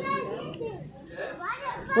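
Background voices of children and adults talking, faint and indistinct, with a short lull about a second in.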